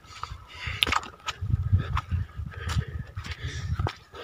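Wind rumbling on the microphone of a hand-held camera, with footsteps on grassy ground at a walking pace.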